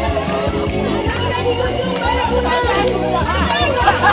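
Music with sustained bass notes that change about once a second, under a crowd of voices chattering and calling out.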